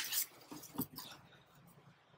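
A few faint taps and rustles of packaging being handled while rummaging in a cardboard box, in the first second.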